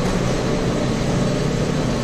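Steady low rumble and hiss of warehouse-store background noise, with a faint mechanical hum.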